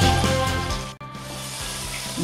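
Background music fades and cuts off about a second in, leaving the steady sizzle of rohu fish steaks shallow-frying in hot oil over a high flame.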